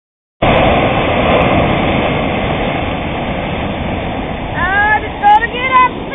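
Sea surf rushing and washing up onto a sandy beach, a steady noisy wash that starts suddenly half a second in. Near the end a person's voice cries out in short rising and falling exclamations as the cold water reaches their feet.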